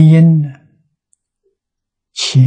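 A man's voice holding a drawn-out syllable that fades out about half a second in, followed by complete silence.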